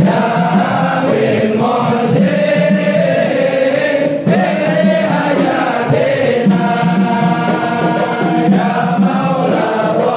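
A crowd of men chanting an Islamic devotional recitation together, many voices carrying one melody without a break.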